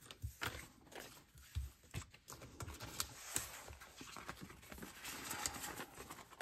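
Paper bills and cards being handled on a tabletop: faint rustling with scattered light taps and soft knocks, the rustling growing denser toward the end.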